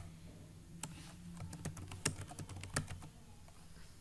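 Computer keyboard being typed on: a scattering of separate key clicks from about one to three seconds in, over a low steady hum.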